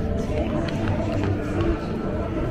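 Busy shop ambience: indistinct voices and background music, with the rumble and rustle of a handheld camera being carried through the store.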